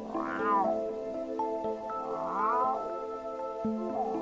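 A cat meowing three times, about two seconds apart, over background music.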